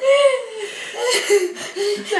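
A woman and a teenage girl laughing hard together in repeated bursts, laughing to the point of tears.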